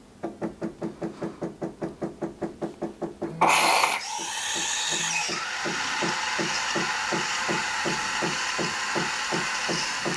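KitchenAid KF8 super-automatic espresso machine frothing milk for a milk-first drink. A pump pulses about five times a second, then a short loud hiss about three and a half seconds in gives way to a steady hiss as frothed milk runs into the cups, with the pulsing going on more slowly underneath.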